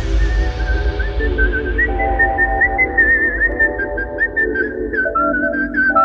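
Electronic dance track in which a whistled lead melody with quick trills and bends plays over held synth chords and heavy boosted bass.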